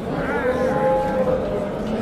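Cattle lowing: one long moo, held for over a second.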